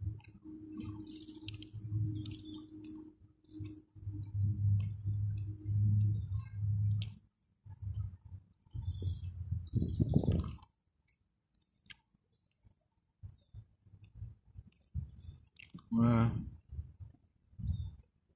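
A man chewing and swallowing roast chicken close to the microphone, in uneven wet mouthfuls with small mouth clicks. A short voiced grunt comes about two seconds before the end.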